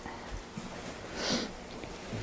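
A person's short sniff about a second in, over quiet room tone.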